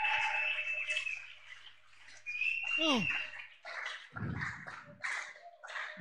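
Faint congregation acclaiming after a call to praise: scattered shouts and cheering in a reverberant hall, with one falling cry about three seconds in. A low electrical hum runs underneath and stops about halfway through.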